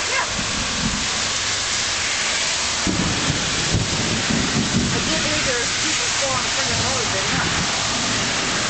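Heavy downpour of rain, a steady hiss. About three seconds in, a low rumble of thunder rises and rolls on for a couple of seconds.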